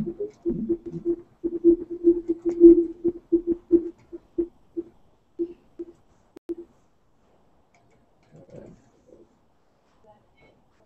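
Audio feedback in a video call: a single steady howling tone chopped on and off into pulses, thinning out and stopping about seven seconds in. A faint short sound follows near the end.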